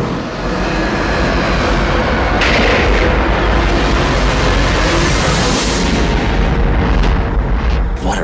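Loud, dense cinematic rumble with heavy bass, a continuous rushing roar that swells about two and a half seconds in, thins out in the highs near the end and cuts off abruptly.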